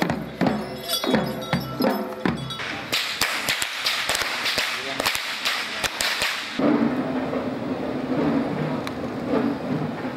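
Procession drumming and piping, then a rapid run of sharp whip cracks from whip crackers swinging long ceremonial whips, lasting about three seconds, before giving way to crowd noise.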